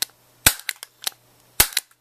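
Handheld stapler snapping shut twice close to the microphone, about a second apart, each sharp snap followed by a couple of lighter clicks as it springs back open.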